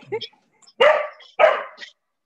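A dog barking twice, two short loud barks about half a second apart, heard over a video call.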